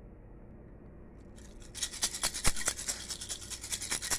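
Scratchy rubbing and clicking of fingers on a phone as it is handled and moved. It starts suddenly a little under two seconds in, with one sharp click about halfway, after a faint hum.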